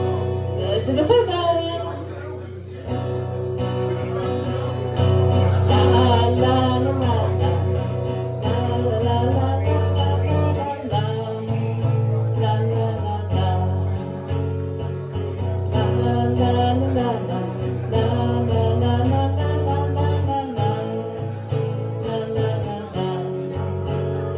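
Acoustic guitar strummed while a woman sings, a live solo song performance.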